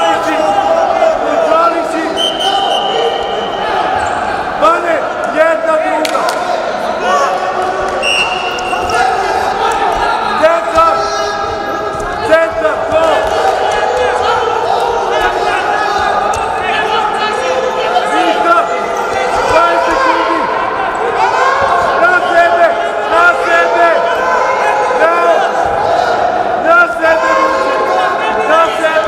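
Several voices shouting over a Greco-Roman wrestling bout, with scattered thuds and slaps from the wrestlers' feet and bodies on the mat, in a large echoing hall. A short high steady tone sounds twice in the first part.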